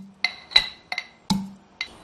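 Stainless steel pestle pounding in a stainless steel mortar: five ringing metallic strikes, about one every half second.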